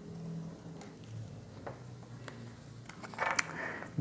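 Tarot cards being gathered up off a glass tabletop: faint scattered ticks of cards sliding and tapping, with a brief louder flurry of clicks about three seconds in as the deck is stacked.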